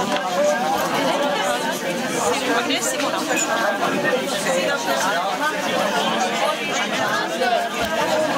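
A group of people chatting at once, many voices overlapping in a steady babble of conversation.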